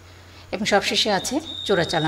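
A woman lecturing in Bengali. About halfway through, a high, thin, steady electronic beep tone comes in under her voice and holds for over a second.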